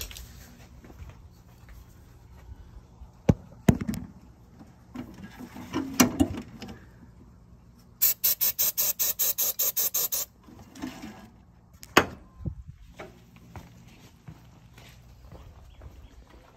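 Aerosol can of starting fluid being worked at the engine bay of a Land Cruiser that cranks but won't start: about two seconds of rapid, even pulses, about seven a second, near the middle. A few sharp clicks and knocks of handling come before and after.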